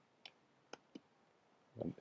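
Three quiet computer keyboard keystrokes, unevenly spaced within about a second, followed by near silence.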